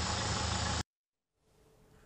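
Steady outdoor background noise, a low hum under a broad hiss, that cuts off abruptly under a second in, leaving near silence.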